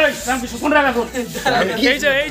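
Speech: men's voices talking.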